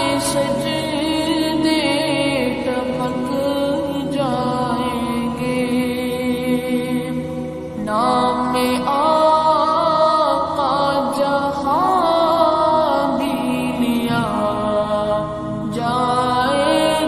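Background music: a sung chant in long, ornamented held notes, with a brief dip about halfway through before a new phrase begins.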